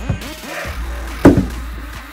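A single sharp whack of a hockey stick hitting a rubber band ball, a little over a second in, over background music.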